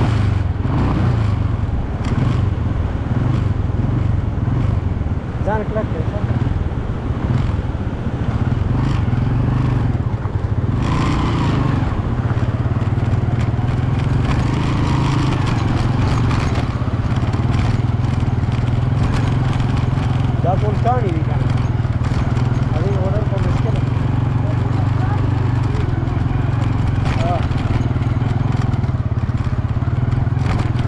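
A vehicle engine running steadily, a continuous low drone as from inside or on a moving vehicle, with faint voices over it.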